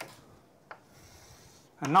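Chalk on a chalkboard as lines are drawn: a sharp tap as it meets the board, another tap under a second later, and faint scraping in between.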